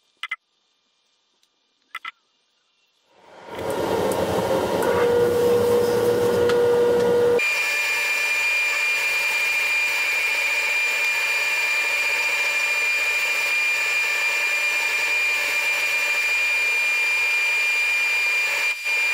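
A Baldor bench buffer switched on and coming up to speed about three seconds in, then running steadily while a small steel lathe part is polished against its spiral-sewn cloth buffing wheel. About seven seconds in the sound changes abruptly to a steady high whine over a hiss. Two faint clicks come before the motor starts.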